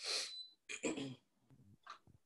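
A person's short breathy sound, then a brief quiet murmur, with near silence through the second half.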